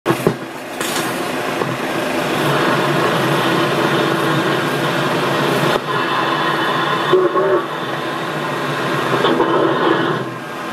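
Railroad train sound on an old promotional film's soundtrack, played through a movie projector's speaker: a steady rolling rumble with no bass, changing abruptly a few times.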